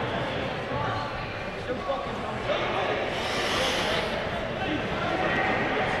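Faint, distant voices over the steady background noise of an ice rink, with a brief hiss about three seconds in.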